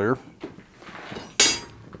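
A short metallic clatter about one and a half seconds in: iron forge tools being handled on the coal bed of a coal forge.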